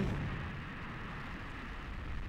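Atlas V rocket's RD-180 main engine just after ignition on the pad: a steady rush of rocket-engine noise with no pitch, easing slightly in level after the first moment.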